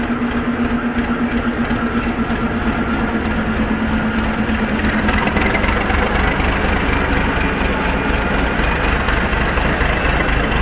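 Diesel shunting locomotive engine running with a steady hum and a regular throb. The sound becomes louder and deeper about halfway through as the locomotive comes closer.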